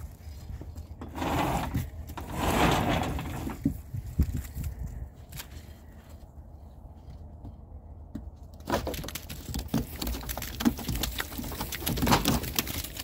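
Ewe lambs' hooves knocking and scraping on the wooden floor of a livestock trailer as they jump out, a quick run of knocks from about three-quarters of the way in. Earlier there are a couple of seconds of rustling.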